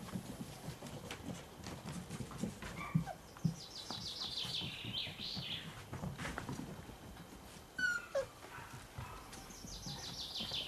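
Cocker spaniel puppy giving a short falling whimper. A songbird sings a quick descending trill twice in the background.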